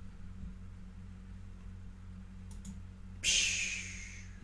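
A man's long breath blown out through pursed lips, a hissing sigh that starts about three seconds in and fades off. Before it come a couple of faint clicks, over a steady low hum.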